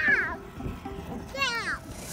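A young child's short high-pitched squeals: one at the start and another about one and a half seconds in, each sliding down in pitch.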